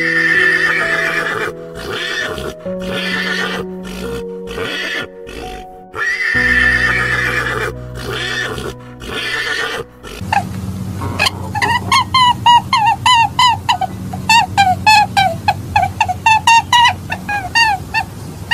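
Horse whinnying in long quavering calls, once at the start and again about six seconds later, over soft background music. From about ten seconds in, a fast run of short honking bird calls follows, three or four a second.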